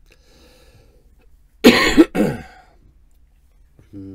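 A man coughing: a short, loud fit of two or three coughs in quick succession about halfway through.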